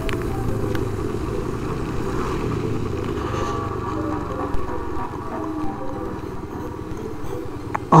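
Yamaha NMAX scooter's single-cylinder engine running at low speed on a wet road, with tyre hiss; the sound eases off in the second half as the scooter slows.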